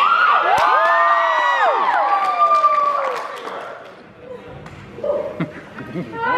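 Audience cheering and whooping in a large hall, the voices sliding up and falling away and fading out about three seconds in. A couple of short thumps follow near the end.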